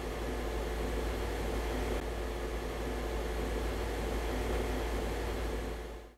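Steady background noise: a low hum under a faint, even hiss.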